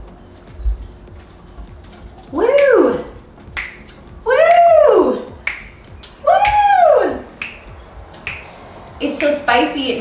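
Repeated finger snaps while a woman lets out three long cries that rise and fall in pitch. She starts talking near the end.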